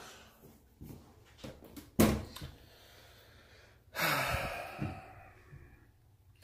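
A man sighs, then a single sharp knock about two seconds in, followed a couple of seconds later by about a second of rough scraping noise in a small room.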